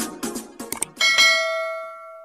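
A single bell chime sound effect strikes about a second in and rings away slowly. Before it, the tail of background music fades out under a few short clicks.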